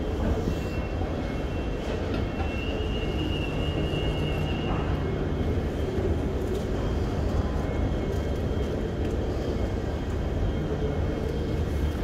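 Steady low rumble and hum of a railway station's machinery: the escalator running and a train at the platform, with a faint high whine in the first few seconds.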